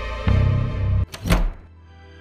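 Tense drama background music ends on a deep bass hit that cuts off abruptly about a second in. A short sharp thud follows, then soft, quiet music with long held notes begins.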